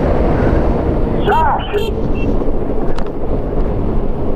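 Wind buffeting the microphone of an electric bike ride, with steady rumbling road noise, a short laugh about a second in and a single click near the end.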